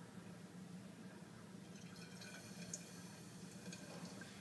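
Faint trickle of hydrochloric acid being poured from one glass flask into another, mostly in the second half, over a steady low hum from the fume hood.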